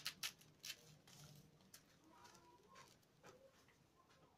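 Faint scratching and a few light clicks, mostly in the first second, as a round cane handle is pushed into the woven rim of a basket.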